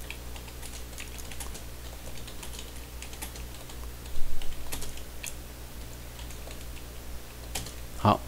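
Typing on a computer keyboard: irregular key clicks, with a louder cluster about four seconds in, over a steady low hum.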